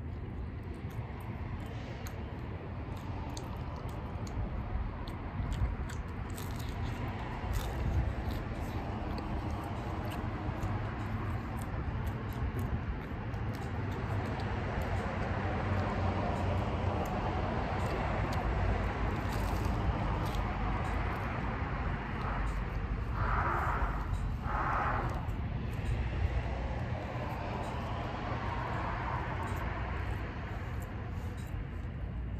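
A person chewing and eating pizza fast, close to the microphone, over a steady low background rumble, with two brief louder sounds about three-quarters of the way through.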